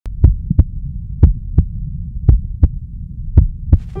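Heartbeat sound effect: four pairs of low double thumps, like a slow pulse at a little under one beat a second, over a steady low hum.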